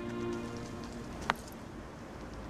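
Soft background score holding a sustained chord that fades out a little past the middle, with one short click just after it and a steady hiss underneath.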